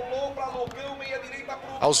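Live match sound from a football pitch: faint, distant voices of players and onlookers calling out, with the narrator's voice starting again right at the end.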